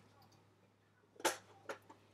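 Stackable plastic trays clicking into place: a sharp click a little over a second in, then a fainter one about half a second later.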